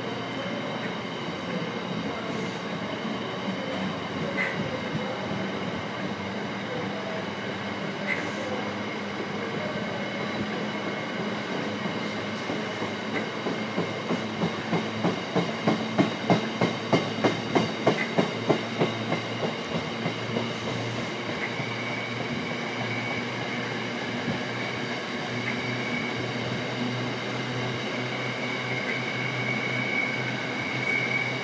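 Container wagons of an intermodal freight train rolling past, a steady rumble of wheels on rail. Midway comes a run of regular clacks, about three a second, as the wheels cross rail joints. A thin high whine grows toward the end.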